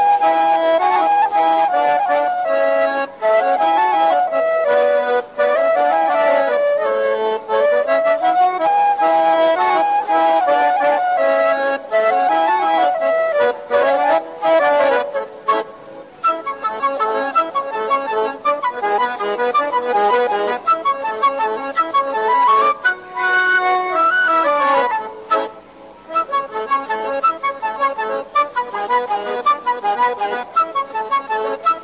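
Diatonic button accordion (organetto) playing a mazurka folk dance tune, with a wind instrument joining in.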